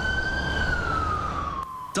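Ambulance siren in a slow wail, its pitch rising to a peak about half a second in and then falling away toward the end, over a low rumble of traffic.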